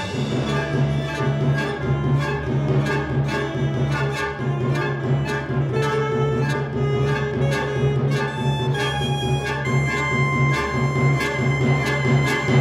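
Alto saxophone and chamber orchestra playing a contemporary classical concerto live. A steady low string drone sits under short, repeated accented notes, and a high held note comes in about ten seconds in.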